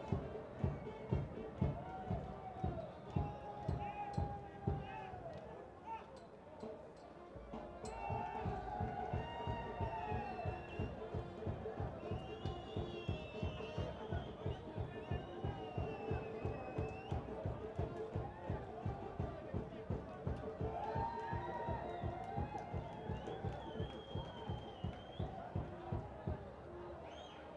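A steady drumbeat, about two to three beats a second, with voices rising and falling over it; the beat drops away briefly about six seconds in and picks up again.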